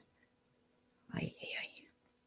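Near silence, then about a second in a person's voice briefly whispering a few soft, unclear sounds.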